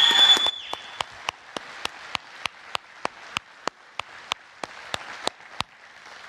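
Congregation applauding, with one clapper close by clapping steadily about three times a second; a short high rising whistle rings out at the start.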